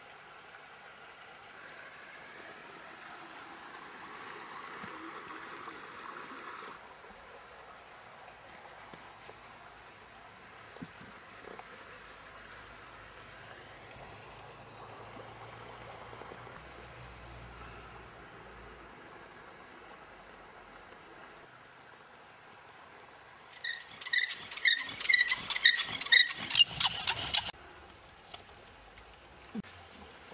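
Faint outdoor ambience, then near the end a rapid run of about a dozen sharp, ringing scraping strikes over some four seconds, made while a fire is being lit.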